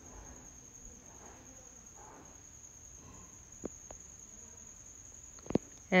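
A wooden ruler handled on cloth laid over a tiled floor: a few light taps, then a duller knock shortly before the end. Under it runs a faint, steady high-pitched whine.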